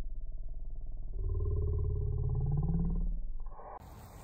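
Low, rasping, muffled growl like a big cat's, a dubbed-in sound effect. It swells about a second in, rises slightly in pitch, then fades out near the end.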